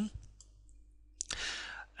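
A near-silent pause, then a little over a second in a sharp click and a soft intake of breath lasting about half a second, the narrator drawing breath before speaking.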